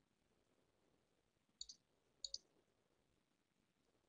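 Near silence broken by three faint clicks from a computer mouse: one about one and a half seconds in, then two close together a moment later.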